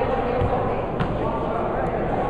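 Indistinct voices in a gymnasium, with a single basketball bounce on the hardwood floor about halfway through.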